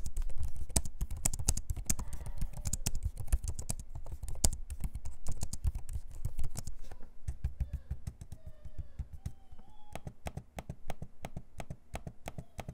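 Typing on a Lenovo Legion 5i Pro laptop keyboard with plastic keycaps: a rapid run of key clicks that thins out in the second half, ending with taps on the trackpad.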